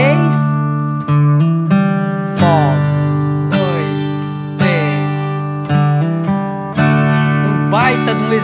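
Steel-string acoustic guitar strumming chords with single downstrokes about once a second, broken twice by a quick three-note fill: open fourth string, a hammer-on to its second fret, then the open third string, used to pass between G and D chords.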